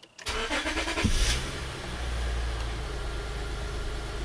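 A 2006 Acura TL's 3.2-litre V6 being cold-started: the starter cranks briefly, the engine catches about a second in, and it settles into a steady idle.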